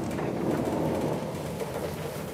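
A felt eraser worked against a chalkboard: a steady rubbing rumble that fades slowly toward the end.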